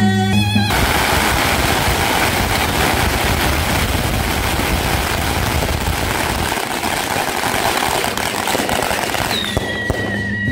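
A long string of firecrackers going off in one dense, unbroken crackle for about nine seconds, starting just under a second in. Traditional band music is heard briefly before it starts and comes back near the end.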